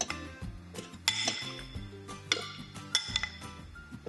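A metal spoon clinking against a bowl as chopped tomato is scooped into a steel kitchen-robot jug: three clinks with a short ring, over background music.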